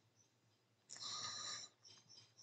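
A man's short breath, heard about a second in and lasting under a second, followed by a few faint ticks near the end.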